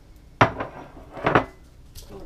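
Two sharp clinks of dishware about a second apart, the second a short clatter: a drinking glass being taken from a dish rack and set down on the counter.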